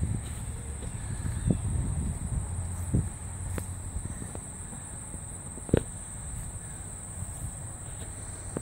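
A steady high-pitched insect drone, over a low rumble of wind on the microphone, with scattered light clicks from handling; a sharper click comes a little before six seconds in.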